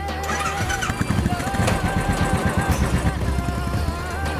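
A motorcycle engine running, a rapid string of low pulses starting about a second in, under background music with long held notes.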